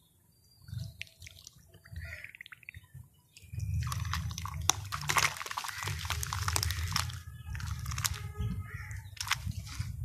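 Faint crackles as fingers press into a cup of frothy wet sand, then, from about three and a half seconds in, a steady gritty crunching and pattering as handfuls of dry sand crumble and fall into the water in the cup.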